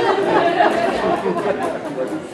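Several people talking at once, overlapping voices in a large room.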